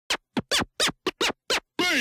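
Turntable record scratching: seven quick scratches, each falling in pitch, then near the end a longer scratch gliding downward.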